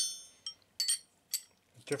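Steel stone-carving gouges clinking together as they are sorted in the hand and set down on the bench: about five short, ringing metal clinks.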